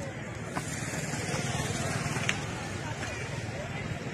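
Steady vehicle noise: an engine running under a hiss of road or wind noise, with a couple of faint clicks.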